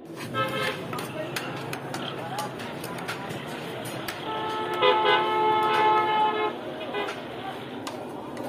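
A vehicle horn sounding: a short toot near the start, then one long, steady honk of about two seconds in the middle, the loudest sound here. Light clinks run under it.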